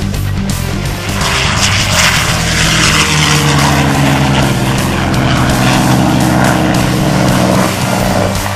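P-51D Mustang's Packard Merlin V-12 engine and propeller in a low fly-by, swelling about a second in, then falling in pitch as it passes and dropping away near the end. Rock music plays underneath.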